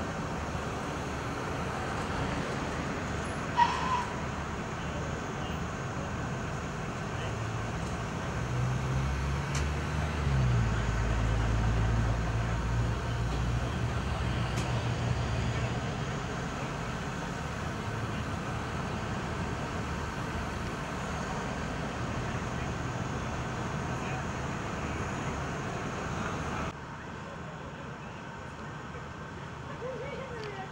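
Heavy vehicle engine, most likely a fire engine's diesel, idling under a steady street-traffic hum. About nine seconds in, a low engine drone rises and runs louder for several seconds before easing back. A single sharp clank sounds about four seconds in.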